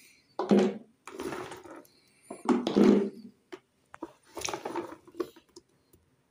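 Handfuls of fresh green olives dropped into a jar of olives, rattling and clattering four times, with a few single olives clicking in between.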